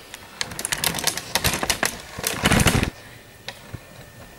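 Camera and tripod being handled and turned around: a quick run of clicks, rattles and knocks lasting about two and a half seconds, with the heaviest bump at the end of the run, then one more click.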